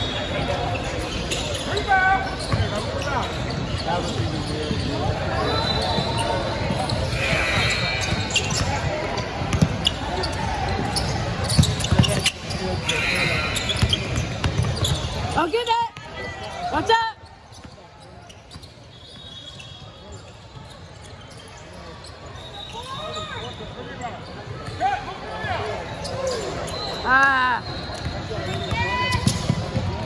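Basketball game noise on a hardwood court in a large hall: the ball bouncing, sneakers squeaking, and indistinct voices of players and spectators. The din drops noticeably about halfway through, then builds back up.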